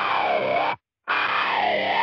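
Distorted electronic alarm-like sound effect, repeating in bursts about a second long with short silent gaps between them, pitches sliding up and down at once within each burst.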